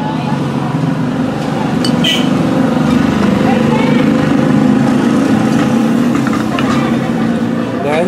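A motor vehicle's engine running close by, a low steady hum that grows louder through the middle and eases off near the end, with a sharp click about two seconds in.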